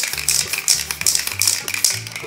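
Aerosol spray-paint can hissing in short, quick bursts, about two to three a second, over background music with a stepping bass line.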